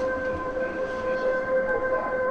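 A steady electronic drone on the soundtrack: one held tone that does not change in pitch, over a hiss.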